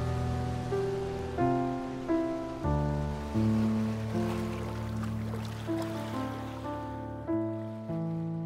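Slow, gentle piano music: single notes about one or two a second, each fading after it is struck, over held low notes. A faint wash of water noise sits under it in the middle.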